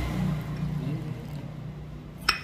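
A low engine-like rumble with a faint steady drone, fading gradually.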